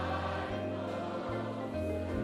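Congregation singing a worship chorus together in E-flat, many voices on held notes over an instrumental accompaniment with sustained bass notes.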